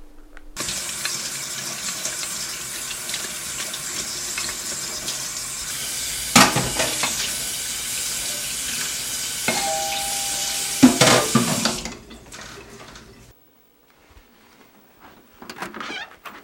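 Kitchen tap running water into a sink, a steady rush, with dishes knocking against the basin about six and eleven seconds in; the water shuts off about twelve seconds in.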